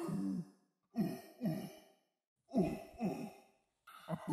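A voice singing a wordless tune in short, pitched phrases, with brief silent pauses between them.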